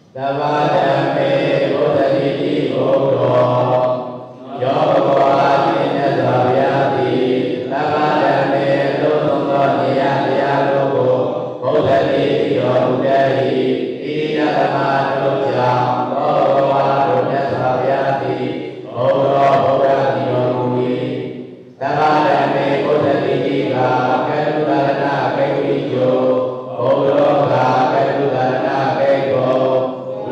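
A Buddhist monk chanting Pali text through a microphone, in even phrases of a few seconds each with short breath pauses between them.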